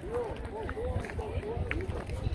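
People talking nearby, with a steady low rumble underneath.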